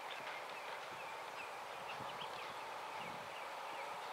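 Open-air ambience: a steady hiss with many faint short chirps and a few soft low thuds.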